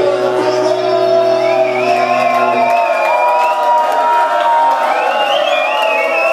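A live band's held closing chord ringing out and stopping about two and a half seconds in, while the audience cheers and whoops.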